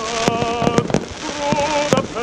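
Aerial fireworks exploding in a rapid series of sharp bangs, about six in two seconds, over a continuous crackle of bursting shells.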